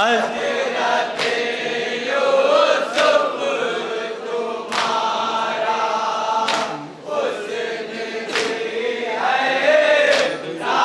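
Men and boys chanting a nauha (Muharram mourning lament) in unison through a microphone and PA, with a sharp beat about every two seconds, typical of matam chest-beating keeping time with the lament.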